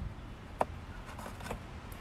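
Low wind rumble on the microphone, with a few light clicks, the sharpest about half a second in.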